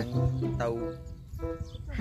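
A man's voice talking over background music with a steady low hum.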